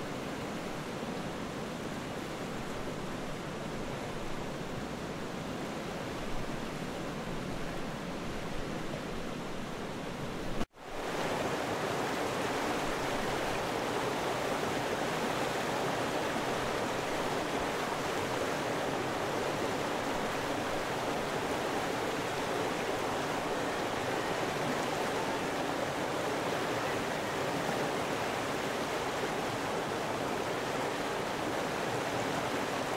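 Steady rushing water, like a fast stream, that cuts out for an instant about ten seconds in and comes back louder and fuller.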